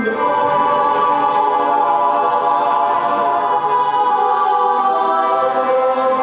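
Synthesizer holding a sustained, choir-like chord, steady throughout.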